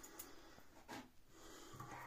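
Near silence: quiet room tone with a faint click about a second in.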